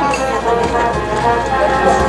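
A brass band playing a march, with a voice over it.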